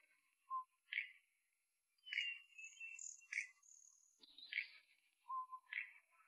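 Birds calling: a series of short chirps about once a second, with a longer, higher call in the middle.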